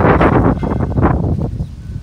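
Wind gusting on the microphone: a loud rush of noise that eases off a little toward the end.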